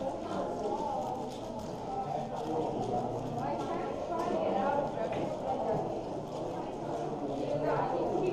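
A 7x7 speed cube being turned fast by hand: a quick, uneven run of plastic clicks and clacks from its layers. There is a murmur of voices behind it.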